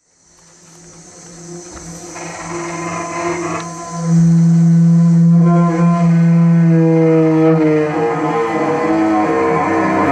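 A cello bowed on a sustained low note, a drone thick with overtones that fades in from silence and grows loud about four seconds in, then breaks into wavering, shifting overtones near the end. A faint high hiss sits above it at first.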